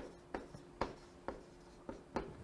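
A faint series of about five short clicks, roughly half a second apart, over a faint steady hum.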